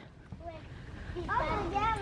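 Faint voices of young children talking, starting about a second in, over low outdoor background noise.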